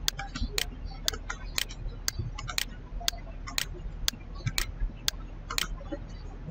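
Regular ticking, about two sharp ticks a second, that stops shortly before the end, over a steady low hum.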